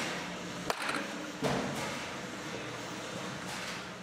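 Steady room noise with one sharp knock a little under a second in.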